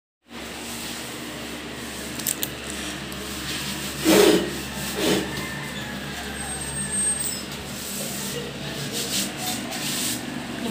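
Steady hand rubbing or scrubbing on a floor surface, with two louder scrapes about four and five seconds in.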